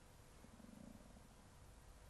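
Near silence: room tone, with a faint low sound lasting about half a second, shortly after the start.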